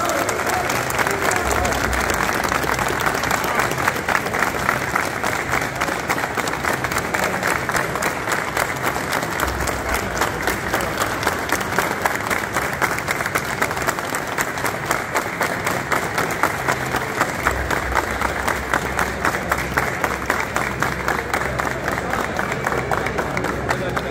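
A crowd applauding: many hands clapping continuously, with voices mixed in.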